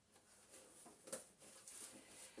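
Near silence: quiet room tone with one faint click about a second in.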